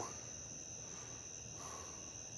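Crickets trilling: a steady, high-pitched chorus that runs without a break.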